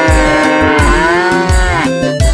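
Music track with a long, drawn-out moo-like lowing call that swells and then falls away near the end, over a steady bass-drum beat about twice a second.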